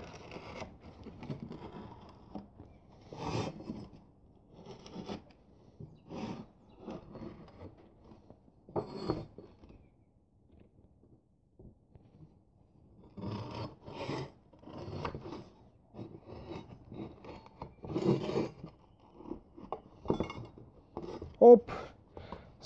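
Square 20×20 mm steel tube, notched at its corners, being bent by hand and folded into a closed frame on a plywood board: irregular scrapes, rubs and knocks of metal, with a quieter pause near the middle.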